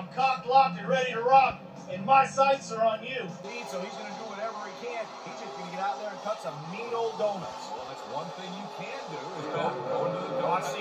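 A man talking for about three seconds, heard from a television broadcast, then a steady din of arena noise with a monster truck engine rising and falling in pitch.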